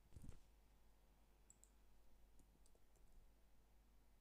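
Faint computer-keyboard keystrokes: a few light clicks between about one and a half and three seconds in, as a word is typed. A soft low thump just after the start is the loudest sound.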